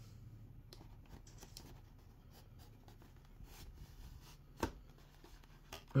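Faint rustling and scraping of a clear plastic blister insert being slid into a cardboard box, with small clicks and one sharper tap about four and a half seconds in.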